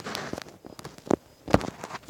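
A few separate light knocks and clicks as a camera is set down and settled on a workbench.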